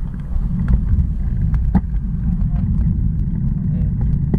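Low rumble of wind and road vibration on a bicycle-mounted action camera as the bike pulls away and picks up speed, with scattered light clicks.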